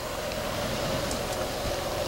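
Steady outdoor background hiss with a faint, even hum, and no distinct events.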